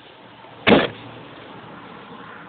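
A sudden loud burst of noise, about a quarter of a second long, two-thirds of a second in, over a steady rushing noise.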